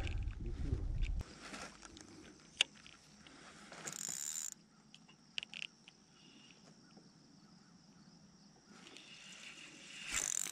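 Faint handling noises of fishing gear in a kayak: a low rumble of movement in the first second, one sharp click a couple of seconds in, a short hiss around four seconds, and a few light clicks, with long quiet stretches between.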